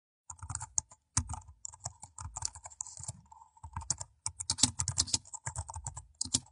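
Computer keyboard typing: a quick, irregular run of keystrokes with a short pause a little past halfway.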